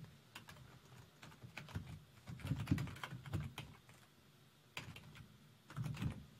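Typing on a computer keyboard: a run of quick, irregular key taps, a short pause a little after the middle, then a few more taps near the end.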